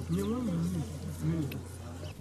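Faint voices of people talking in the background over a steady low hum.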